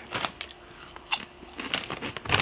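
Plastic snack bag crinkling softly as it is handled and turned over, with scattered small crackles and one sharper crackle about halfway through.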